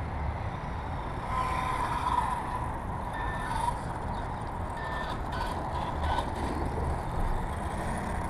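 Electric motor of a radio-controlled 2wd Slash car whining in short spurts of throttle as the car drives across asphalt, over a steady low outdoor rumble.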